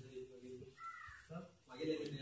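A crow caws once, about a second in, over faint low speech.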